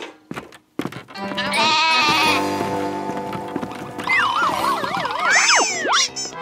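Cartoon background music with a goat's wavering bleat about one and a half seconds in. Near the end come swooping whistle-like sound effects that rise and fall.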